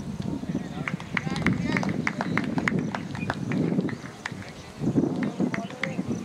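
Indistinct voices of people talking across an open field, with a quick series of sharp clicks, several a second, from about a second in and a few more near the end.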